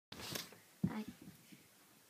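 Faint breathy sounds close to the microphone, then a short, low voiced murmur about a second in, from a child right next to the camera.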